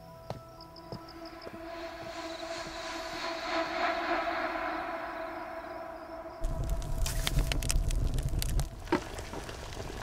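Soft background music of sustained tones that swells and fades. About six seconds in it gives way abruptly to a louder low rumble with quick crackles and clicks from a large steaming wok being worked with a bamboo strainer.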